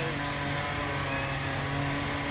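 A steady, low-pitched machine hum that runs without change, with a short spoken word at the start.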